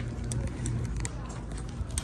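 Supermarket background noise: a steady low hum with a few faint ticks and knocks.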